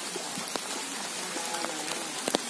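Steady rain falling on wet leaf litter and puddles, with scattered sharp ticks of individual drops.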